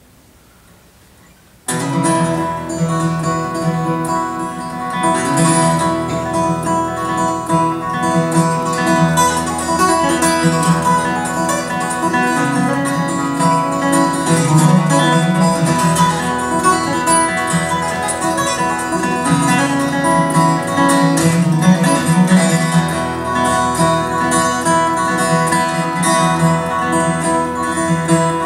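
Solo steel-string acoustic guitar playing a song's instrumental introduction, starting suddenly about two seconds in and carrying on steadily without a voice.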